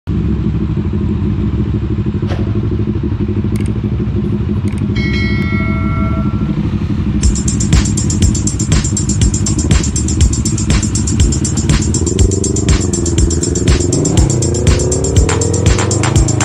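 Motorcycle engine running at idle. About halfway through, music with a steady beat comes in over it. Near the end the engine note rises and falls as the bike pulls away.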